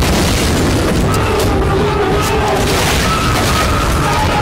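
Sound effects from a film action scene: a loud, dense, continuous low rumble.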